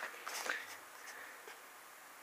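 A brief rustle of the comic book's paper page being handled, then a faint steady hiss.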